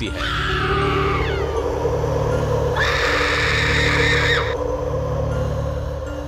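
A female witch's voice screaming, as a horror sound effect: a falling shriek in the first second, then a longer, high scream from about three to four and a half seconds in, over a steady low droning music bed.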